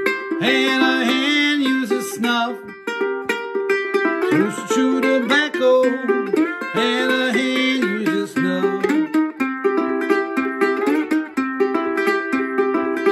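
Steel resonator ukulele in C tuning played with a slide: a repeating blues riff of plucked notes, with the slide gliding up into pitch.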